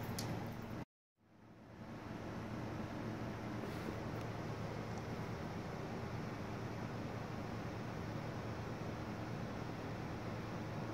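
Steady low hum of a refrigerator compressor running. The sound cuts out completely for a moment about a second in, then fades back up to the same steady hum.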